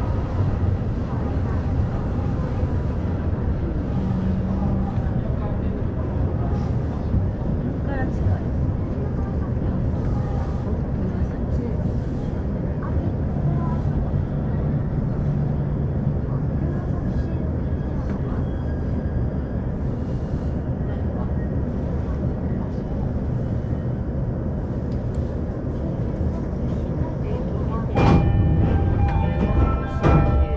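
Commuter train heard from inside the car, with a steady low rumble as it runs and slows into a station platform. Near the end there is a sudden loud burst, followed by a few chime tones.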